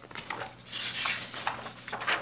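Cardboard LP sleeve and paper booklet being handled: rustling and sliding with a few small knocks and clicks. The longest rustle comes just before the middle.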